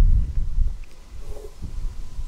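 Wind buffeting the microphone as a low rumble, loudest in the first second and then easing off.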